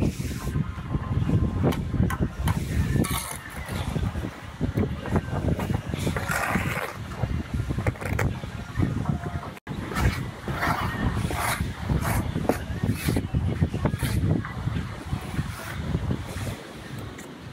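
Strong wind buffeting the microphone: a constant low rumble that rises and falls in gusts. Over it come occasional scrapes and taps of a steel trowel spreading mortar and of concrete blocks being laid.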